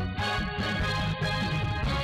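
Instrumental station ident jingle between news items: sustained chords with percussion strokes.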